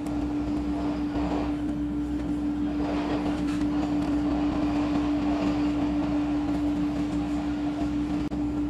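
A steady machine hum held at one constant pitch, with faint rustling and scraping of hands working calipers on a steel bar.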